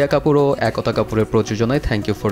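Speech only: a voice talking without pause, with no other distinct sound.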